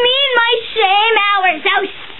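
A child singing wordless notes, the voice wavering up and down in pitch.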